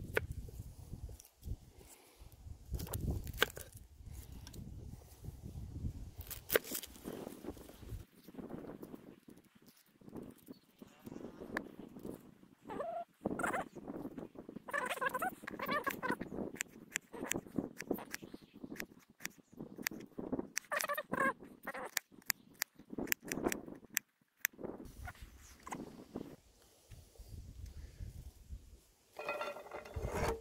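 Kitchen knife peeling and chopping an onion on a wooden chopping board: scattered knocks and scrapes, then a quick run of chopping knocks in the later part.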